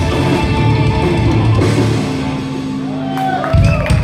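Black metal band playing live with drum kit and distorted guitars. The sound thins to a held chord about two seconds in and ends on a loud final hit near the end, as the crowd starts whistling and cheering.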